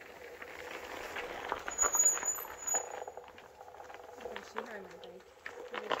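Electric one-wheel board rolling over a gravel trail: irregular crunching from the tyre on the gravel, with a faint steady hum.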